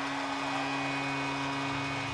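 Arena goal horn sounding one long steady blast over a crowd cheering a goal.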